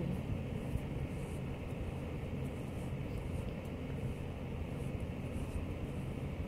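A steady low hum under an even rushing noise, like a room fan running, with a few faint light clicks.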